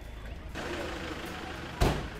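Steady low hum and hiss of a van's interior, with a single loud sharp thump near the end.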